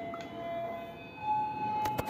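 Wireless doorbell receiver ringing its electronic chime tune, heard faintly from some distance away: one steady note, then a slightly higher note from about a second in.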